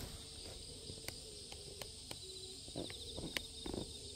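Faint steady chirring of insects in the background, with several light, scattered clicks and taps of handling.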